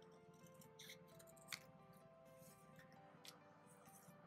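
Faint background music, with a few short snips of small scissors cutting through a paper sticker, the sharpest about one and a half seconds in.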